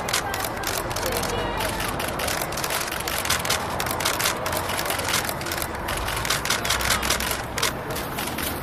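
Many camera shutters clicking rapidly and overlapping, several clicks a second, over a low outdoor rumble and indistinct voices.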